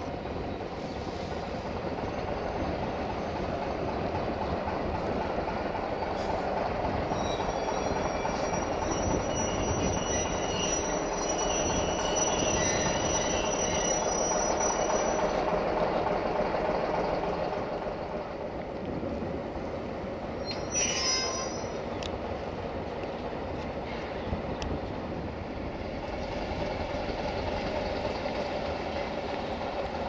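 A train rolling slowly along the station tracks: a steady rumble of wheels on rail, with a thin, high wheel squeal from about 7 to 15 seconds in. A short sharp noise comes about 21 seconds in.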